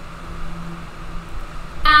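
A pause in speech filled only by a steady low hum over faint room noise. A woman's voice starts again just before the end.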